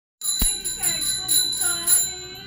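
Small metal hand bell rung repeatedly during a Hindu puja, about three strikes a second, each strike giving a high, clear ring that carries over into the next.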